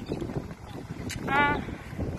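Wind noise on the microphone while walking outdoors, with one short, high-pitched wavering call about a second and a half in.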